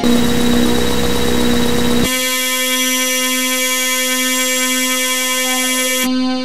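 Black MIDI playback of a synthesized piano soundfont (Casio LK-300TV): for about two seconds a dense, noisy cluster of countless simultaneous notes, then it switches abruptly to a huge sustained chord of many steady held tones.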